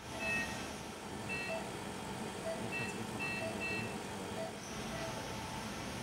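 Operating-room equipment during a microwave liver ablation: a steady hum of machinery with short electronic beeps, a lower beep roughly once a second and higher two-tone beeps in short runs.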